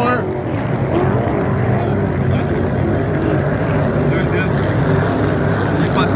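Several Hydro 350 racing hydroplanes' V8 engines running at speed across the water, a steady drone.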